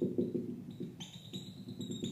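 Felt-tip marker tapping rapidly on a whiteboard as dots are stippled on, a quick run of light taps about seven a second that grow fainter in the second half.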